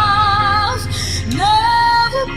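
A woman singing a soaring ballad live, holding a long note with vibrato over quiet backing music. Her voice breaks off briefly near the middle, then she slides up into a new sustained note.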